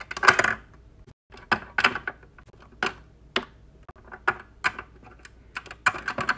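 Small plastic Littlest Pet Shop figures clicking and tapping against a plastic toy playhouse as they are set down and moved by hand: an irregular string of sharp clicks, the loudest near the start and several close together near the end.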